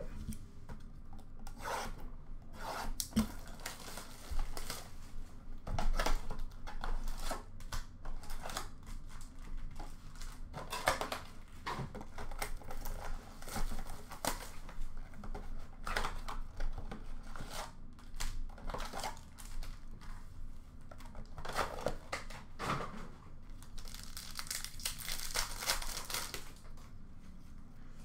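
Upper Deck hockey card blaster boxes and packs being opened by hand: cardboard and pack wrappers tearing and crinkling, and cards rubbing and sliding against each other, in irregular bursts, with a longer spell of crinkling near the end.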